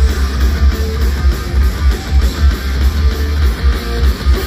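A live band playing loud rock music through the PA, with electric guitar over a heavy, pulsing bass.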